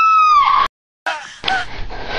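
A girl's long, high-pitched scream held on one note, sliding down in pitch and cutting off sharply less than a second in. After a moment of silence, a lower background bed with a short voice sound follows.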